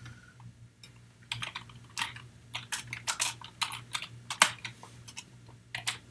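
Typing on a computer keyboard: irregular key clicks, sparse at first, coming quickest through the middle, with a short lull near the end before the keystrokes pick up again.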